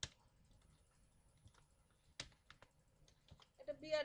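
Computer keyboard keystrokes: a few separate key clicks, the sharpest at the start and another about two seconds in.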